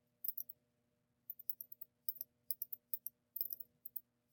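Faint computer mouse clicks, short and sharp, coming in small clusters several times a second, over a faint steady hum.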